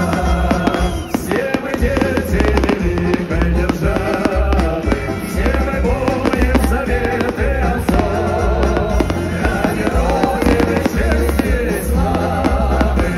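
Loud music with a heavy bass beat, mixed with the bangs and crackles of an aerial fireworks display going off throughout.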